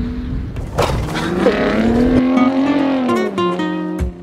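Pickup truck engine revving hard as the truck drives fast off-road, its note rising and then falling. Music comes in near the end.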